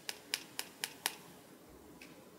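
A small hand-held tube clicking, about six sharp clicks at roughly four a second in the first second, made to demonstrate the sound of an object.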